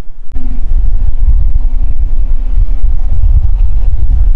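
Wind buffeting the camera microphone: a loud, gusting low rumble that starts abruptly a moment in, with a faint steady hum underneath for most of it.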